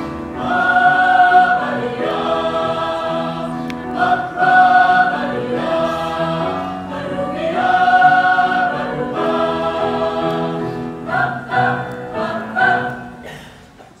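Mixed choir of men's and women's voices singing sustained chords in harmony, in long phrases that swell and ease off, with shorter notes and a fade near the end.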